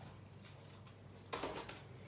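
Mostly quiet room with a faint hum, then a brief rustle of tissue paper being handled about one and a half seconds in.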